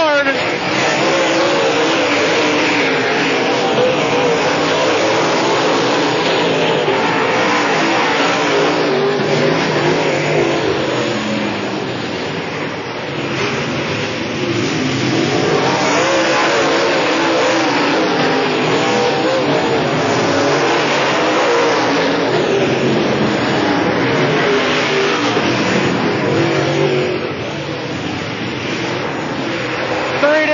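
Dirt late model race cars' V8 engines running hard in a pack on a dirt oval, their pitch wavering up and down as the cars power through the turns, growing softer and louder again twice as they pass.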